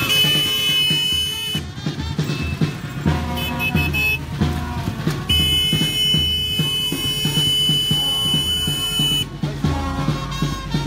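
Background music with a steady beat. Two long steady high-pitched tones sound over it: a short one at the start and a longer one of about four seconds in the second half.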